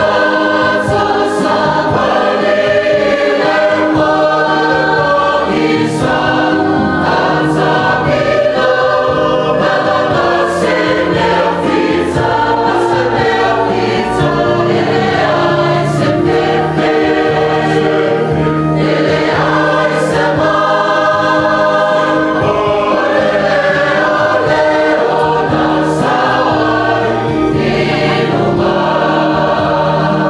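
Church choir singing a hymn without a break, accompanied by an electronic keyboard.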